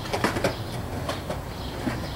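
Skateboard rolling over pavement: a low rumble from the wheels with several irregular sharp clacks.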